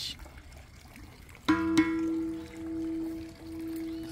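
Steel plough-disc bird feeder struck twice in quick succession about a second and a half in, then ringing on with a long steady bell-like tone that slowly swells and dips.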